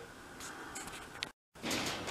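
Faint room noise with a single light tick just over a second in, broken by a moment of dead silence at an edit cut.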